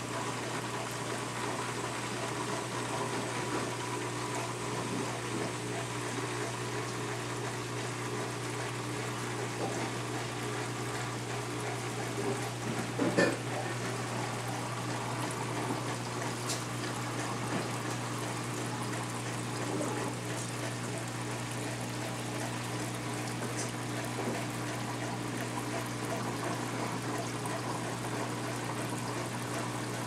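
Reef aquarium's water circulation running: steady bubbling and trickling water over a low, steady pump hum, with one brief knock about midway.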